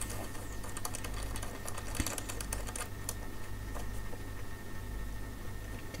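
Small metallic clicks, taps and scrapes of a binding post, its nut and a small hand tool being fiddled into place behind a metal instrument panel. The clicks come thickest in the first half, with one sharper knock about two seconds in.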